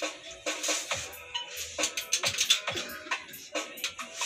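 Background music: a dance remix with a drum beat.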